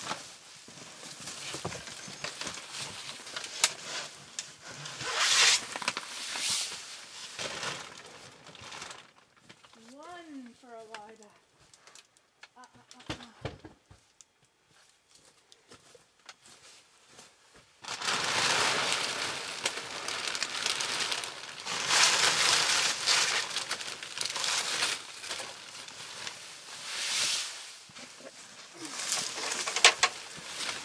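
Plastic sheeting and plastic bags rustling and crinkling as they are handled, in irregular spells, loudest in the second half. About ten seconds in there is a brief wavering pitched sound, then a quiet stretch with a couple of small clicks.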